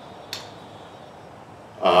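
Quiet room tone with one short click about a third of a second in, then a man's hesitant 'uh' near the end.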